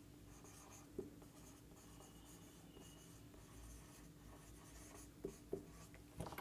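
Faint sound of a marker writing on a whiteboard, with a light tap about a second in and two more just after five seconds.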